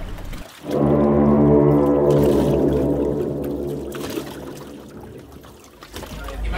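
A deep, sustained drone with many overtones that swells in about half a second in and then slowly fades away, typical of an edited music or sound-effect transition.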